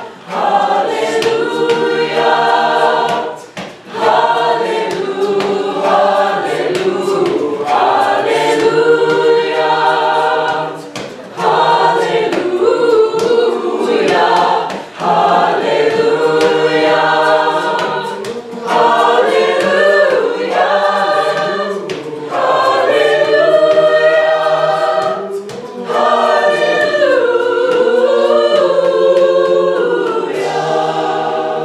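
Mixed choir of teenage voices singing a cappella in several-part harmony, in phrases broken by short pauses for breath.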